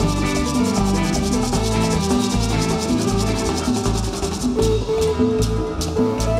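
Live band playing an upbeat groove on congas, drum kit, bass and keyboard, over a fast, even scraping percussion pattern. About four and a half seconds in the scraping drops out, leaving sharper single hits.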